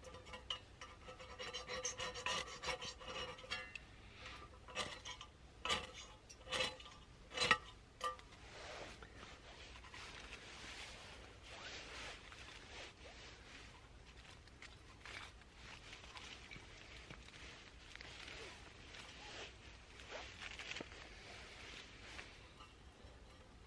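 Tinder being struck alight in a small hobo stove: a rasping scrape, then several sharp scraping strikes about five to eight seconds in. After that comes a faint steady hiss of the tinder burning, with a few small clicks as pieces of kindling are added.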